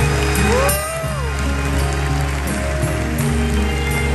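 Live amplified music in a concert hall: a performer on acoustic guitar and vocals, with one note sliding up and back down about a second in.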